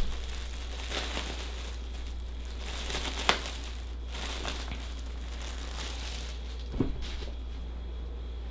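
Clear plastic poly bag crinkling and crackling as a hoodie is handled and pulled out of it, in irregular bursts with a sharper crackle about three seconds in and another near the end.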